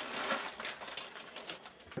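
A plastic zip-top bag crinkling and small shredded HDPE plastic flakes rustling and clicking against each other as a hand scoops a handful out of the bag. The rustle fades off in the second half.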